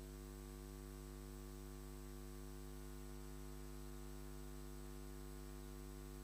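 Faint, steady electrical mains hum with a stack of evenly spaced overtones, unchanging throughout; no other sound.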